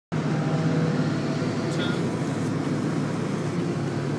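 Steady in-cabin engine drone and road noise from a gutted Honda Civic EG hatchback with a built B20 VTEC, cruising at a constant speed on the highway before the pull. The hum holds an even pitch throughout.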